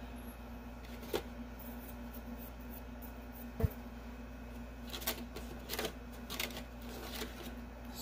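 Art supplies handled on a tabletop: a light click about a second in, a sharper knock a few seconds later, then a run of light clicks and scrapes near the end, over a steady low hum.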